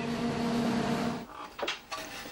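A steady mechanical hum with a hiss, holding a few fixed tones, that stops about a second in. A single short knock follows near the end.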